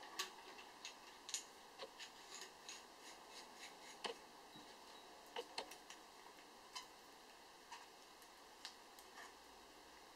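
Faint, scattered small metallic clicks and ticks as an air rifle's fill valve and lock ring are handled and screwed into the empty steel air cylinder by hand, about a dozen light clicks at irregular intervals.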